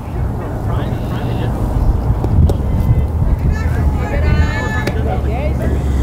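Wind rumbling on the microphone, with faint high-pitched voices of players calling out around the middle.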